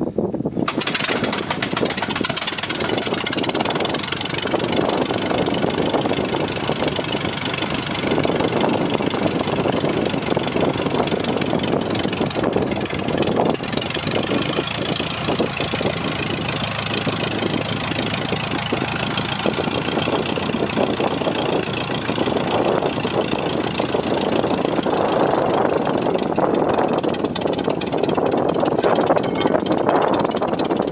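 Porterfield CP-65's 65 hp Continental four-cylinder air-cooled engine catching on a hand-propped start about half a second in, then running at a steady idle, the propeller turning.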